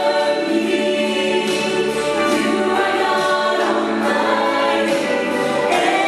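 Southern gospel vocal group of women and men singing in close harmony into microphones, holding long sustained notes.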